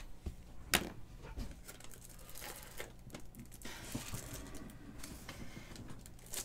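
Objects being handled on a tabletop: a sharp tap about three quarters of a second in, then faint rustling and small clicks over a low steady hum.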